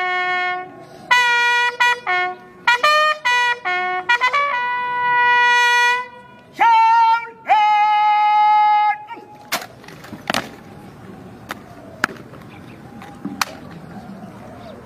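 A bugle call: a run of short notes and then longer held notes, the last one ending about nine seconds in. After it come several sharp knocks.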